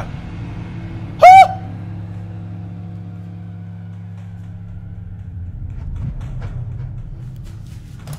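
A low steady rumbling drone from a horror film's soundtrack, with one short, very loud, high-pitched cry about a second in.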